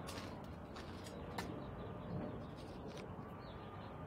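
Faint bird calls over a steady low background hum, with a few faint clicks.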